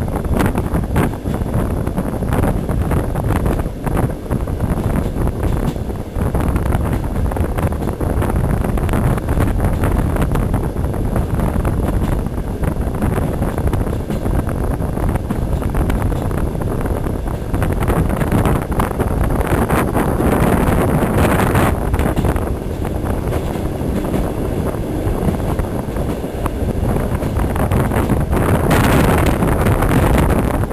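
Steady low rumble and rush of a passenger train in motion, heard from on board, with wind rushing over the microphone. There are scattered short knocks, and the noise swells about two-thirds of the way through.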